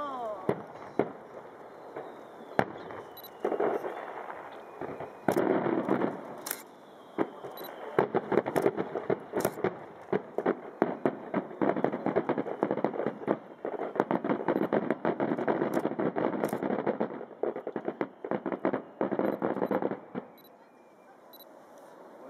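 Aerial fireworks going off in a rapid barrage: sharp shell reports over a dense rattling crackle, the closing volley of the display, building from about four seconds in and dying away near the end.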